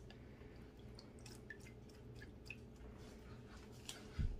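Faint dripping and small splashes of water as dirty hands are rinsed in a bucket of muddy water: scattered soft drips over a low steady room hum, close to silence.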